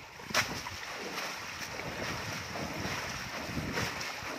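Fast-flowing shallow water rushing and splashing as a woven bamboo basket is dipped and pulled through the current, with a sharp splash about half a second in and another near the end.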